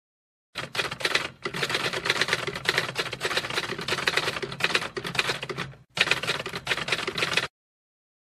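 Rapid typewriter keystrokes, a dense run of clicks in three stretches with short breaks about a second and a half in and near six seconds, stopping shortly before the end. It is the typing sound effect for text being typed out on screen.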